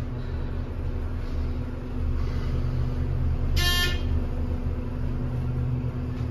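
ThyssenKrupp hydraulic elevator rising between floors, its pump motor running with a steady low hum and a faint constant tone. A short chime rings once a little past halfway.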